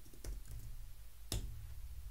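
A few keystrokes on a computer keyboard, with one louder key press about a second and a third in.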